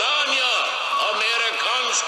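A man's voice with very little bass, its words not made out.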